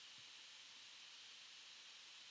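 Near silence: a faint, steady hiss of room tone.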